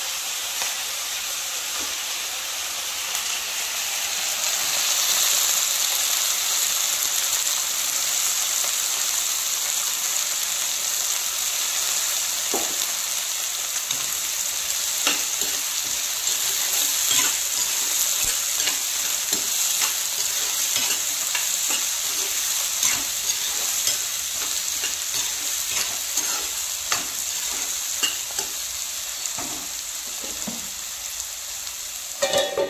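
Food frying in hot oil in a pan: a steady sizzle that grows louder about four seconds in. From about halfway through, a spatula stirring sliced eggplant adds scattered clicks and scrapes against the pan.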